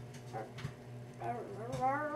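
A girl's voice starts humming a wavering, rising tune a little over a second in, after a couple of short soft sounds.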